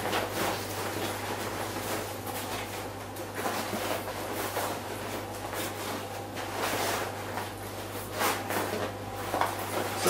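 Rucksack fabric rustling and scraping as the pack is handled and a slalom pole is worked through its side hydration holes, with a steady low hum underneath.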